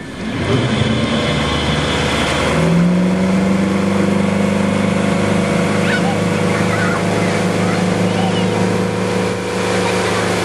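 Towboat's engine powering up to pull a water-skier out of the water: the engine note climbs about two and a half seconds in, then holds steady at towing speed, with the churn of the boat's wake.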